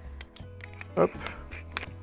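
Light metallic clicks and clinks as a steel spade bit's shank goes into a Makita HP457D cordless drill's keyless chuck and the chuck is twisted tight by hand, with one sharper click near the end. Soft background music runs underneath.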